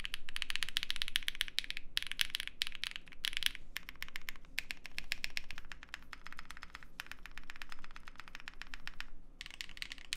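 Fast two-handed typing on an Extreme75 mechanical keyboard with KTT Strawberry linear switches and GMK doubleshot ABS keycaps: a dense, quick run of keystrokes broken by a few short pauses. It has the sound of a PE-foam-modded board.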